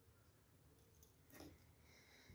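Near silence: room tone, with one faint, brief sound about one and a half seconds in.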